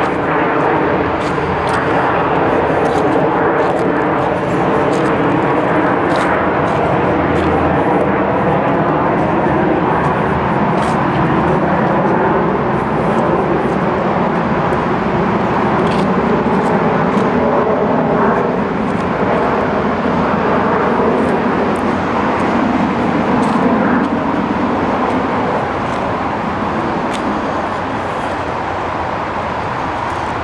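Steady engine drone with several held tones, easing slightly over the last few seconds, with light footsteps on the leaf-covered dirt trail ticking over it.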